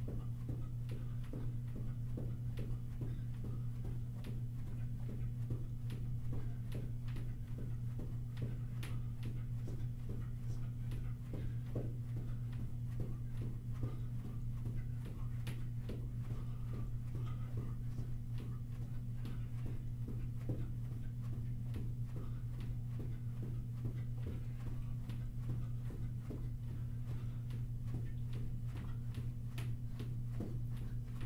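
Sneakered feet jogging in place on a carpeted floor: a continuous run of light footfalls, under a steady low hum.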